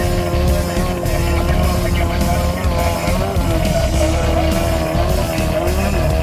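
Off-road race buggy's engine running hard as it drives alongside, with a steady note that wavers and dips in pitch partway through, heard under background music.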